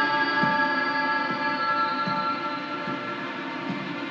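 Tense film score: a cluster of held high tones, fading slightly toward the end, over a low, uneven pulse of soft knocks about twice a second.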